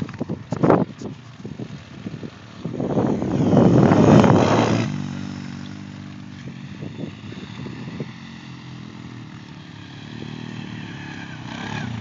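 ATV engines running, a steady drone that grows louder near the end as a quad speeds toward the jump. A loud rushing noise, the loudest sound here, comes from about three to five seconds in.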